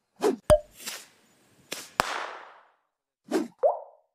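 Animated TV channel ident sound effects: a run of about seven short plops and clicks, one about two seconds in followed by a fading hiss, and the last pop sliding up in pitch.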